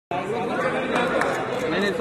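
Chatter from several people talking at once, their voices overlapping, with the echo of a large hall. A couple of brief sharp clicks sound about a second in.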